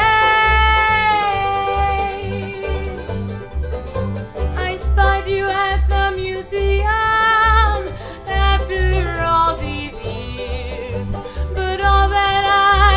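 Acoustic folk/bluegrass string band of banjo, mandolin and double bass playing under a woman's lead vocal. She holds long sung notes, some gliding in pitch, over a steady deep bass pulse.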